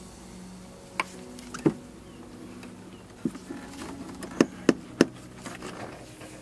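A ratchet and socket on a plastic oil filter housing cap: about half a dozen sharp, irregular clicks and knocks as the cap is worked loose, the loudest three coming close together near the end, over a steady faint low hum.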